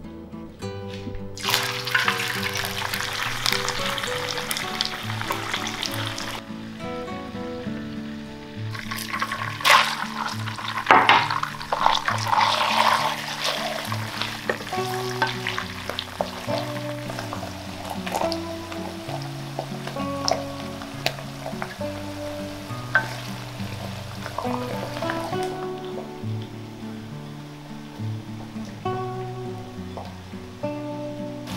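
Hot oil sizzling in a nonstick wok over background music. A burst of frying starts about a second and a half in and stops around six seconds. Pickled mustard greens and Sichuan peppercorns are then stir-fried from about nine seconds, sizzling with the scrape and tap of a wooden spatula, loudest early on and dying away about five seconds before the end.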